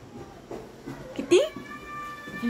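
A house cat meowing: one long, even-pitched call that begins about a second and a half in.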